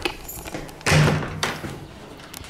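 A room door being handled and opened: one thump about a second in, with a few light taps and clicks around it.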